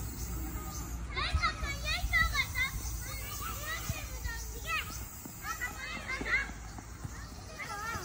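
Young children's high voices shouting and calling out over one another while they play soccer, coming in short busy spells.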